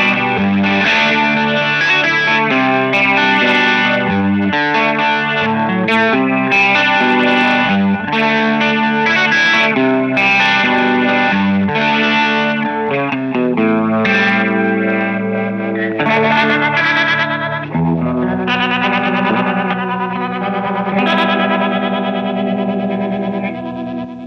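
Electric guitar played through a Korg ToneWorks G4 rotary speaker simulator pedal with its drive channel on, into a Jim Kelley valve amp. It plays a run of quick notes and chords, then held chords that waver with the simulated rotating speaker.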